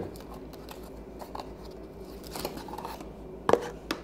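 Small clicks and taps of packaged items being handled, with a sharp snap about three and a half seconds in and a smaller one just before the end.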